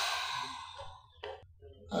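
A long, breathy sigh that fades out over about a second, followed by a short second breath.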